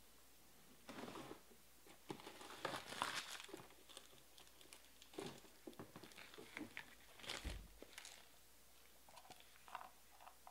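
Trading-card pack wrappers crinkling and tearing as packs are ripped open, in irregular bursts that are loudest about three seconds in, with a few light clicks.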